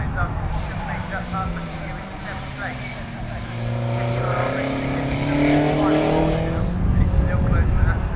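BMW E30 M3 race car's four-cylinder engine accelerating out of a corner, its note rising steadily for a few seconds, over the hiss of tyres throwing spray on a wet track. The sound cuts off abruptly near the end.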